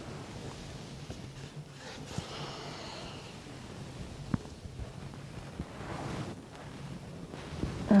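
Quiet room with a faint low hum, a soft breath about two seconds in, and a few light taps.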